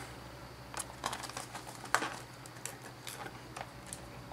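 Faint, scattered light clicks and rustles of a clear plastic toy capsule being handled and fitted together around an action figure.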